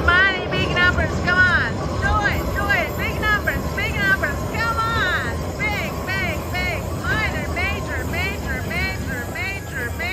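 Slot machine bonus sound effects from a Huff n' More Puff cabinet: a rapid run of chiming tones, each rising then falling in pitch, two or three a second, as credit values and bonus symbols land on the reels. A steady low casino rumble sits underneath.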